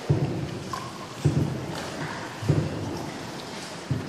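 Paddle strokes in water from a small paddle boat in a cave: a dull, splashy thud about every second and a quarter, each trailing off.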